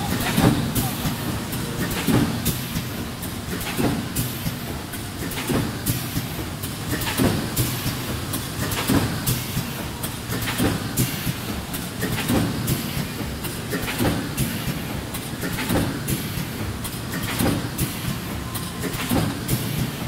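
Automatic thermoforming machine for plastic cups running at production speed, with a clattering stroke about every 1.7 seconds as the tilting mold cycles, each stroke carrying a short high hiss. Steady hall noise and voices run underneath.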